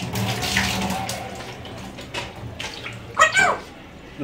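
Alexandrine parakeet giving one short call that rises and falls in pitch, about three seconds in, over a steady hiss like a running tap that fades after the first second.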